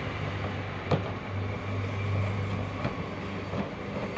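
Small concrete mixer running, its rotating drum giving a steady low hum, with a single sharp knock about a second in.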